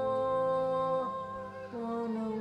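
Church hymn music: a voice singing over sustained accompaniment. It holds one chord, then moves to the next about a second in.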